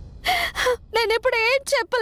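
A woman sobbing: a gasping, breathy intake early on, then a wavering, broken crying voice.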